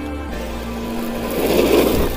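Electric RC buggy (Vkar Racing Bison V2) driving on rough asphalt: its motor whines and its tyres spray grit as it comes close, loudest about one and a half seconds in. Background music plays throughout.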